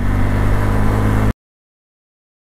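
Motorcycle engine running steadily at cruising speed, with wind noise on a helmet-mounted microphone. Just over a second in the sound cuts off abruptly to dead silence.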